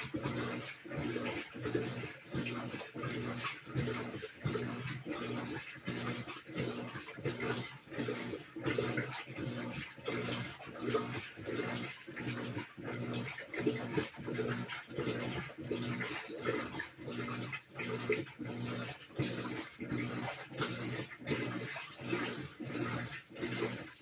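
Whirlpool WTW4816 top-load washer in its wash stage: the motor hums and water sloshes in an even, repeating rhythm of roughly a stroke a second as the load is worked back and forth.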